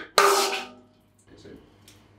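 A mallet knocking a soft wooden peg into the shive of a metal beer cask: one hard strike that rings on briefly, then a few faint knocks. The soft peg is being driven in to vent excess CO2 from the cask-conditioned beer.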